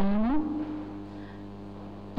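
A speaker's long drawn-out hesitation sound, an 'ehh', gliding up slightly and then held steady as it fades, over a faint steady low hum.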